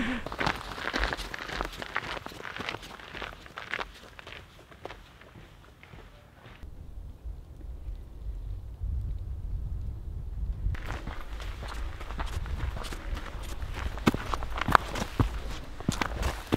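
Footsteps of hiking shoes on a snow-dusted rocky trail, a quick run of steps, with a low wind rumble on the microphone underneath. The steps stop for a few seconds in the middle, leaving only the rumble, then resume.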